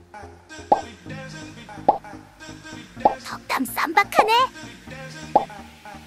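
Background music with four sharp pops spread through it: about a second in, near two seconds, at three seconds and past five seconds. Between the third and fourth pops comes a quick run of squeaky, swooping pitches, rising and falling.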